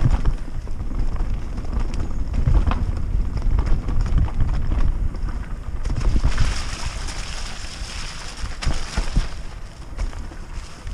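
Norco Aurum downhill mountain bike ridden fast down a dirt trail: wind on the microphone, a low rumble and short knocks and rattles as it rolls over roots and rocks. About six seconds in a steadier hiss joins for a few seconds as the tyres run through a wet, muddy rut.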